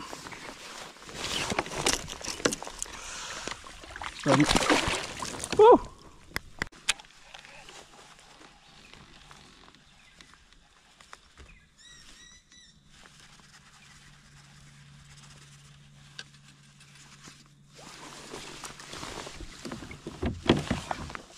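Water splashing and sloshing against a plastic kayak hull as a Murray cod is handled and released over the side, with loud splashes in the first six seconds. Then quiet drifting, with a short burst of bird chirps about twelve seconds in.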